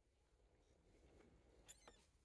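Near silence, with one faint click near the end.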